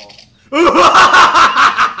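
A man bursts into loud laughter about half a second in, a rapid run of laughing pulses.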